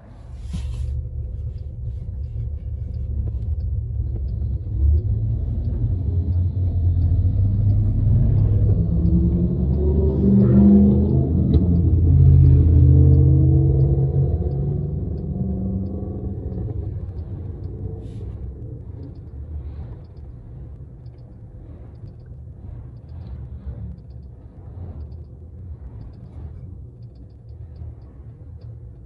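Low rumble of road and drivetrain noise inside a moving minivan's cabin, swelling to its loudest about ten to thirteen seconds in, with sliding pitch sweeps there, then easing off as the vehicle slows.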